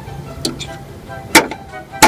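A plastic model horse's hooves knocking against a toy house's plastic door as it tries to break the door open. One sharp knock comes a little over a second in and another at the very end, over faint background music.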